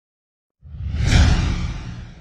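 An edited-in whoosh sound effect with a deep rumble underneath. It comes in suddenly about half a second in, swells to a peak and then fades away.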